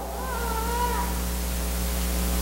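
A pause in the preaching filled by a steady low electrical hum through the church sound system, with faint sustained tones above it. A short, faint rising-and-falling tone sounds during the first second.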